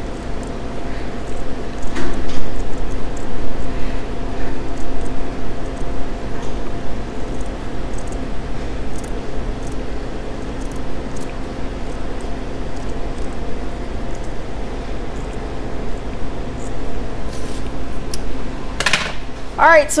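Scissors cutting a small patch of polyester linen fabric, with faint snips at irregular moments over a steady background hum. A short, louder rustle comes near the end.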